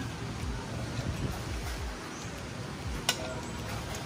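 A person eating a forkful of noodles over a steady low rumble of background noise, with a single sharp click about three seconds in.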